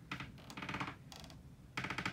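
Faint, irregular light taps and rustles in a few short spurts, with quiet between them.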